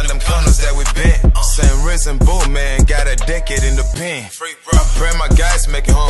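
Hip hop track: rapping over a beat with heavy bass hits. The beat drops out briefly about four seconds in, then comes back.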